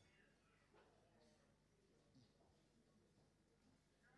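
Near silence, with only a faint steady low hum.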